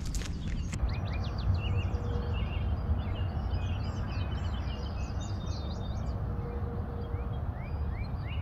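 A barn swallow twittering: a quick, irregular run of short high chirps over a steady low rumble of wind on the microphone. In the first second, footsteps crunch on dry dirt before the chirping starts.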